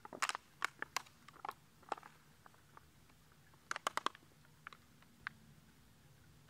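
Soft plastic pouch of a squeeze water filter being squeezed and handled, giving short sharp crinkles and clicks: a flurry in the first two seconds and another around four seconds in.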